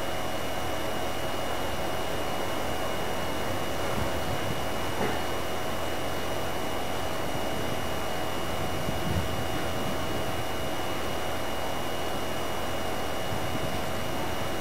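Steady background hiss with two faint, constant hum tones: the recording's own noise floor, with no distinct sound events.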